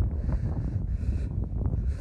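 Wind buffeting the microphone: a loud, uneven low rumble with a steady hiss above it.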